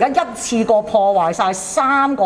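Speech: a woman speaking.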